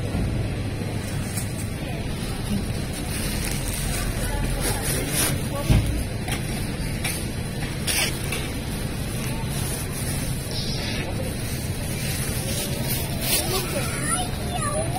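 Supermarket background: a steady hubbub of indistinct voices with faint in-store music, scattered light clicks, and a single thump about six seconds in.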